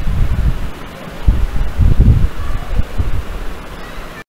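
Low, uneven rumbling with a steady hiss underneath: noise on the microphone, like wind or breath across it, swelling loudest about two seconds in.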